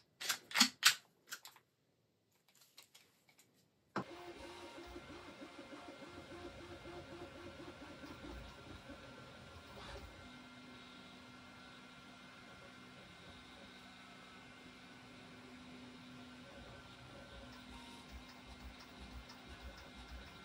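A quick run of sharp clicks as the AEA HP Max air rifle and its harmonica magazine are handled. After a short pause comes a faint steady hum with a low tone.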